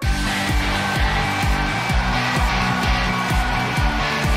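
Music with a steady, fast thumping beat and sustained tones, starting abruptly.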